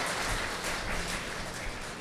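Audience applause, a dense patter of clapping that slowly dies away.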